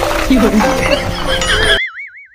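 Edited comedy soundtrack: background music under excited voices, then near the end the sound cuts out abruptly and a wavering, warbling whinny-like sound effect plays.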